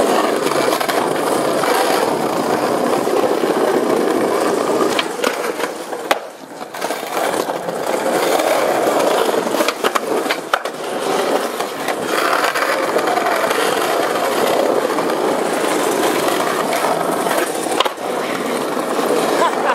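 Skateboard wheels rolling over rough sidewalk pavement with a steady gritty roar, broken several times by sharp clacks of the board's tail popping and the board landing during flatground tricks.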